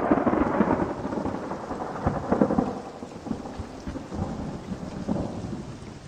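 A long, rolling rumble of thunder over a steady hiss of rain, slowly fading, in the manner of a storm sound effect.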